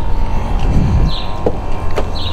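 Driver's door of a 2006 Range Rover Sport being opened, with a short click of the latch about one and a half seconds in, over a steady low rumble.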